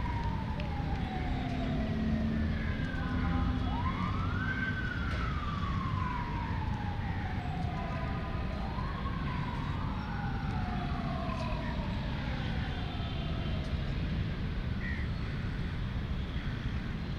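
Wailing siren of an emergency vehicle. The pitch rises quickly and sinks slowly over several seconds, again and again, with two wails overlapping near the middle, over a steady background rumble.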